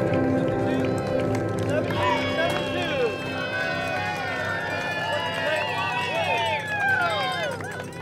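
Spectators cheering and whooping, many overlapping voices calling out from about two seconds in until just before the end, over background music that fades out early.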